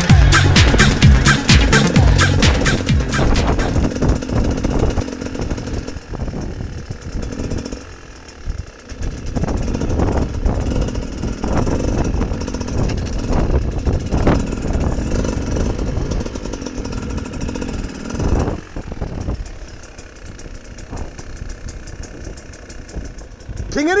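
Dance music with a steady beat fades out over the first few seconds. After it, a dirt bike engine is heard outdoors, revving unevenly as the bike climbs a grassy slope.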